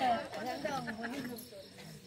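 A man's voice trails off over the first second or so. Crickets chirp steadily beneath it.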